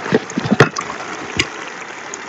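Boiled snails in their shells tipped from a plastic bowl into a pot of simmering pepper sauce: a few shell knocks and plops, the sharpest about half a second in, over the steady bubbling of the sauce.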